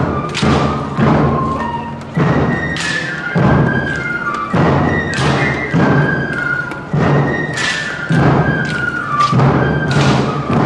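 A fife and drum band playing a march: heavy drum beats about once a second under a high, thin fife melody.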